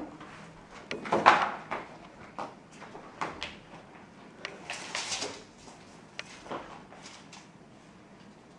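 Scattered knocks, clicks and rustles of movement as two people get up from plastic chairs and handle a clipboard and a measuring tape, with the loudest knock about a second in.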